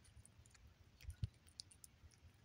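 A cat eating wet food, with faint small clicks and smacks of its mouth and tongue, and one louder click a little past the middle.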